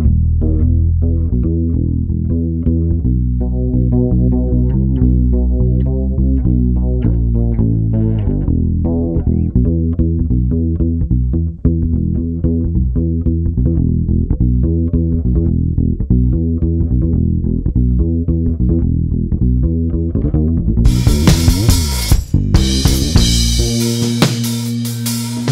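Raw, unprocessed direct-injected (DI) electric bass guitar playing a busy, fast jazz-fusion line of low plucked notes. About 21 seconds in, a drum kit with cymbals joins.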